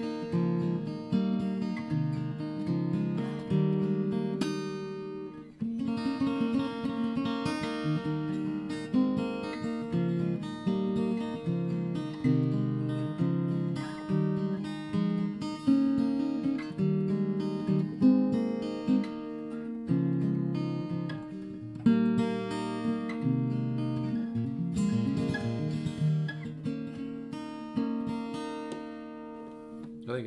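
Ibanez AEG10 acoustic-electric guitar in DADGAD open tuning, played through a small 15-watt amp: ringing chord forms and picked melodic patterns with open strings droning, with a brief let-ring pause about five seconds in.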